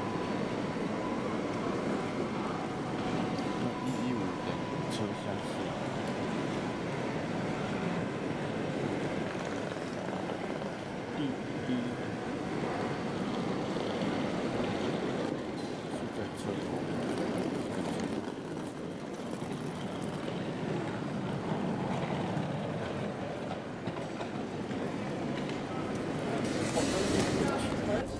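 Railway station hall ambience: a steady, reverberant wash of indistinct voices and background noise.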